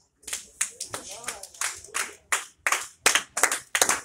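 Hand clapping in distinct, separate claps, irregular at first and coming faster near the end, as a sermon closes. A voice is briefly heard about a second in.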